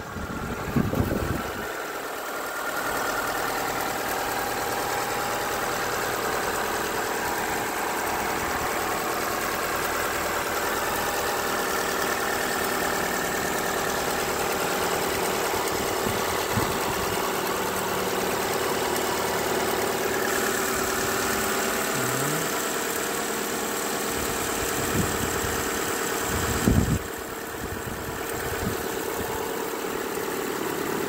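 Mazda Demio's 1.3-litre four-cylinder petrol engine idling steadily, heard with the bonnet open. There is a short low thump about a second in and another, louder one near the end.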